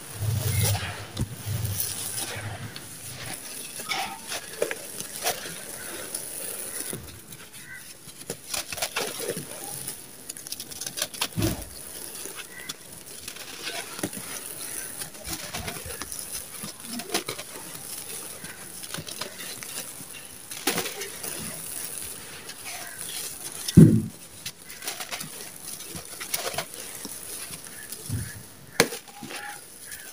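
Bare hands crushing and crumbling dry sand-cement mix with small stones: a steady gritty crunching and crackling, with the patter of grains pouring through the fingers. A few dull thumps stand out, the loudest about three-quarters of the way through.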